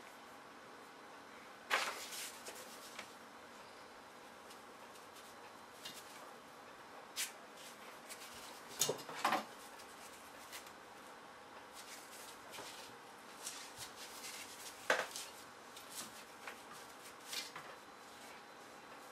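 Faint handling sounds as a computer CPU heatsink is wiped clean with a paper towel: scattered light clicks and rustles, the strongest about two, nine and fifteen seconds in.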